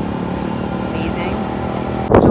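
City street ambience: a steady rumble of road traffic with faint voices of passers-by.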